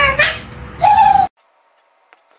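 A man's voice making hooting 'ooh' sounds: a short wavering call, then a held steady note that cuts off abruptly into silence just past the middle.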